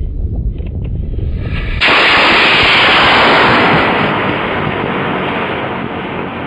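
A low rumble, then about two seconds in a model rocket motor ignites with a sudden, loud rushing noise. The noise fades slowly as the rocket climbs away from the pad.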